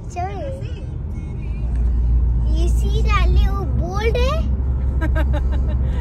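Steady low road and engine rumble inside the cabin of a moving car, a little louder from about two seconds in, with voices and music over it.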